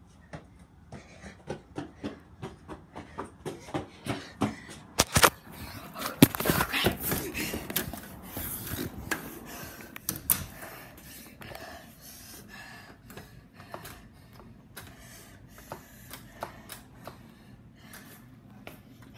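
Handling noise from a phone being carried and covered: a quick run of taps and thumps, loudest about five to ten seconds in, with rustling as the microphone rubs against a hand or clothing.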